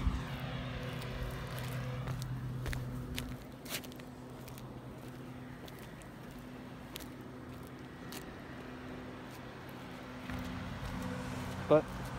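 Steady low machine hum, clearer for about the first three seconds and fainter after, with a few faint clicks.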